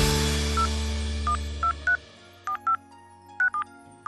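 Smartphone touchscreen keypad tones as a phone number is dialled: about eight short two-note beeps at uneven spacing. Under the first half they sound over the fading end of a music jingle.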